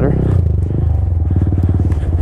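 2017 Honda Grom's 125 cc single-cylinder four-stroke engine running at low revs. Its note drops about half a second in and settles into a steady, slower chug.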